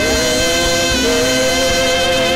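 Saxophone playing long held notes in worship music: the first slides up into pitch at the start, and a lower note takes over about a second in.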